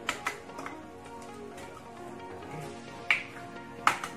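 Background music, with sharp taps of an egg being knocked against a ceramic bowl to crack it: three light taps in the first second and two louder ones about three and four seconds in.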